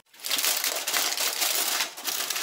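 Aluminium foil crinkling and crumpling as hands peel it off the top of a bowl, a dense continuous crackle starting a moment in.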